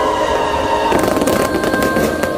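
Fireworks going off, with a cluster of sharp bangs and crackles from about a second in, under background music with sustained tones.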